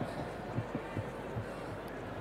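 Rugby stadium ambience: crowd noise with faint distant voices and low thuds.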